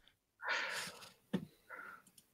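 A person breathing out sharply through the nose, a short breathy sound, then a single click and a second, briefer breath.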